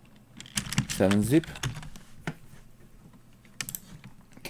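Computer keyboard typing: a quick run of keystrokes shortly after the start, a single keystroke later, and a few more clicks near the end.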